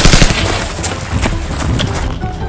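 Rapid burst of automatic rifle fire that stops about a third of a second in, followed by a few scattered single cracks.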